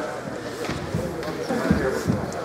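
Indistinct voices of people talking in an ice arena. Two low thuds come through, about a second in and again near the end.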